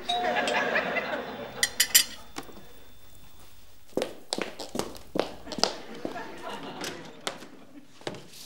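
A dense burst of sound with a few sharp knocks in the first two seconds. Then, from about the middle, high-heeled shoes click in irregular footsteps across a wooden floor, ending at a door.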